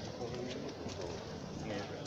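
Street ambience with indistinct voices of passers-by over a steady background hum.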